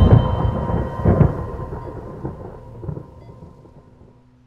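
Deep rumbling boom that starts suddenly, swells again about a second later, then rolls away and fades over the next few seconds.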